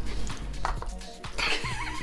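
Background music playing, with a few faint clicks early on and a short wavering, pitched sound near the end.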